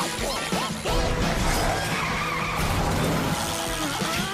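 Cartoon soundtrack: background music with comic sound effects, and short squeaky cries that swoop up and down in pitch during the first second.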